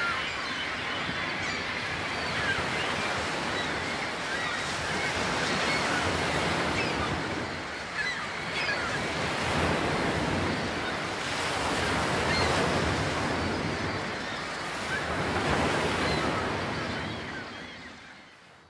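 Ocean surf: waves washing in and drawing back in slow swells every few seconds, fading out near the end.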